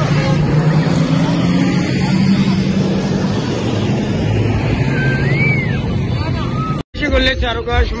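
Street sound of a motor vehicle engine running close by, with voices in the background. About seven seconds in it cuts off abruptly and a song with singing begins.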